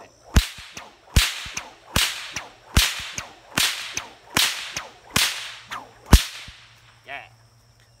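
Bullwhip cracked repeatedly in a steady rhythm: eight sharp cracks, about one every 0.8 seconds, each with a short swish before it, stopping about six seconds in. Crickets chirp faintly underneath.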